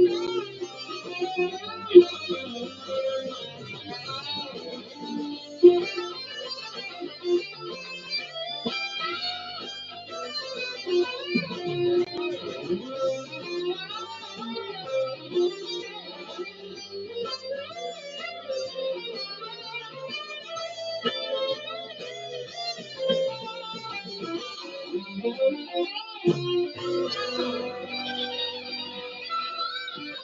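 Electric guitar playing a melodic lead line of single notes, many of them bent.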